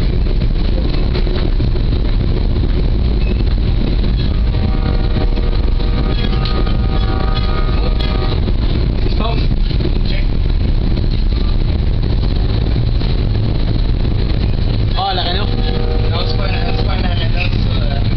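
Steady rumble of a passenger rail car rolling along the track, heard from inside the car. A chord of steady tones sounds for about four seconds near the start and again briefly near the end.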